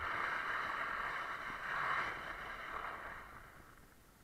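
Dull-edged skis scraping and hissing across icy, hard-packed snow during a fast descent. The sound swells twice, at the start and about two seconds in, then fades near the end.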